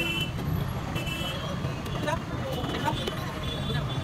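Busy open-air market sound: a steady low rumble of traffic under people talking, with a few sharp knocks from a knife chopping fish on a wooden block.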